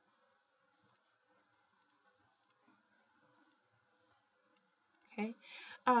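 Faint, scattered computer mouse clicks over a low steady room hum, then a woman's voice starts talking near the end.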